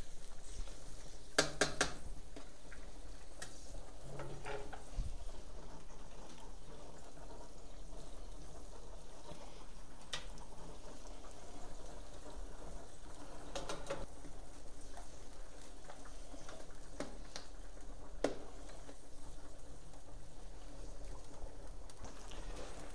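Broth with rice boiling steadily in a wide steel paella pan over a wood fire, with occasional sharp crackles from the burning wood. This is the rice's first boil, with the fire kept strong to spread the rice through the broth.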